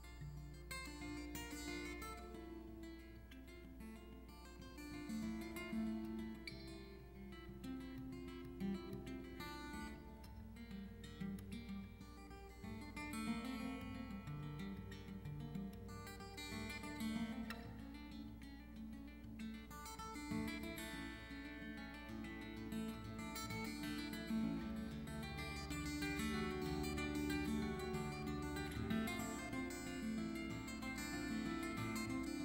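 Solo acoustic guitar played fingerstyle, a mellow instrumental in a tuned-down alternate tuning, growing a little louder in the last few seconds.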